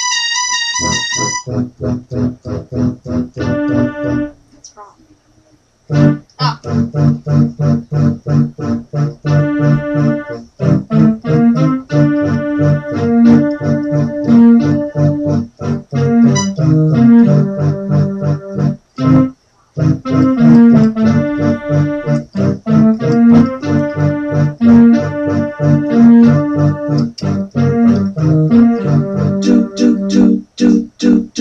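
Electronic keyboard played four-hands in a piano voice: quick, repeated notes in a steady rhythm, opening with a held tone and breaking off briefly about four seconds in before the playing resumes and runs on.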